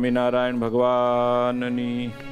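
A man's voice chanting in long, held notes, opening a devotional song.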